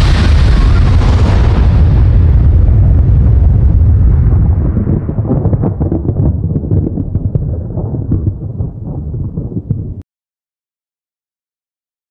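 Aftermath of a large explosion: a deep rumble whose upper hiss fades over several seconds, leaving a low rolling rumble with scattered crackles. It cuts off suddenly about ten seconds in.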